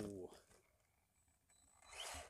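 The tail of a man's exclaimed "oh", then near silence, with a brief rush of noise near the end.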